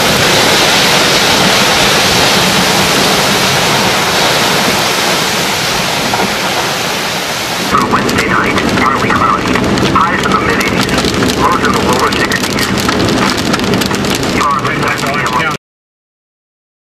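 Torrential rain and gusting wind pounding on a car, a dense steady roar for the first half. After a cut about halfway through, heavy rain is heard from a car driving through it, with voices over it, until the sound cuts off suddenly near the end.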